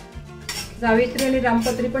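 Metal spatula scraping and stirring mace and rampatri around an iron kadhai: metal grating on metal with ringing scrape tones, getting louder about a second in.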